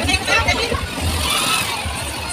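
Street parade noise: a truck engine running close by, with voices from the crowd mixed in.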